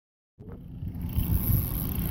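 Low rumbling noise that starts abruptly just under half a second in and grows louder, with no clear pitch.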